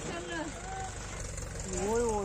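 An engine idling low and steady under faint, scattered voices talking.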